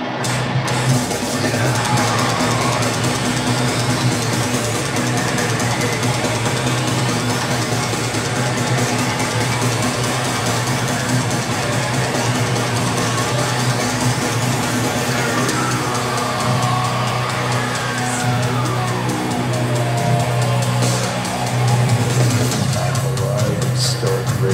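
Heavy metal band playing live in an arena: distorted guitars and drums over a steady low drone, with a few gliding pitch sweeps through the middle. The sound is loud and continuous.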